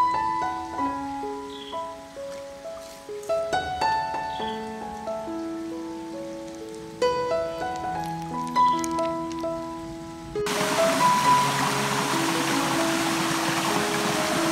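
Background music, a slow melody of held notes. About ten seconds in, the steady rush of a small waterfall and stream joins beneath it.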